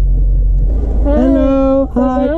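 Steady low rumble of the Mercedes-AMG G63 idling, heard inside the cabin. About a second in, a person's voice comes in with a long, drawn-out call.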